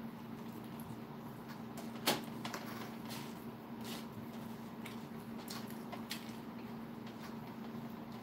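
Close-up eating sounds: a man chewing a bite of pizza, with a few short clicks and taps as he handles fish sticks on a metal baking sheet. The loudest click comes about two seconds in. A steady low hum runs underneath.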